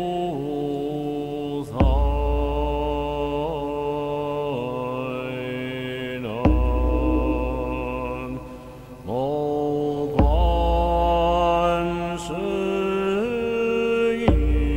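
Recorded Buddhist mantra chant: a melodic voice sings in long held notes over a steady low musical accompaniment. A new phrase starts about every four seconds.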